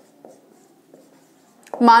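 Marker pen writing on a whiteboard: faint scratching strokes with a few light ticks as letters are drawn.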